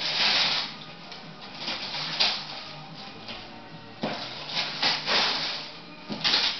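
Wrapping paper being torn and rustled off a present in several rough bursts, with music from a television faintly underneath.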